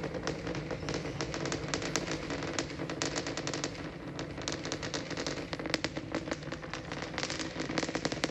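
Super Heavy booster's 33 Raptor engines climbing away, heard from the ground as a steady rumble full of rapid, irregular crackling.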